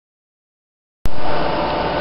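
Silence for about a second, then the sound cuts in abruptly with a click: the steady whir of cooling fans on bench power-supply equipment, with a low electrical hum and a faint steady whine.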